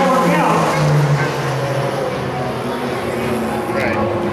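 Race car engines running on the oval, a steady drone that drops in pitch about a second in as a car goes past.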